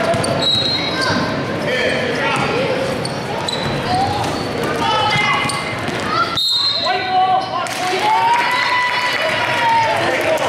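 Basketball bouncing on a gym floor during a game, with players and spectators calling out over it. Everything echoes in a large hall.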